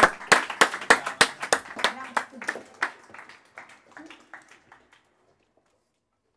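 Hand clapping, about three claps a second, dying away over the first five seconds, with voices underneath.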